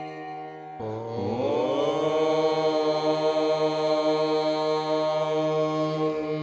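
Devotional mantra chanting over a steady drone: a single long held note enters about a second in, slides upward in pitch, then holds steady.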